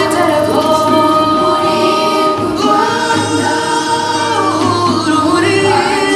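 A song with a choir singing held notes over music, in a gospel style.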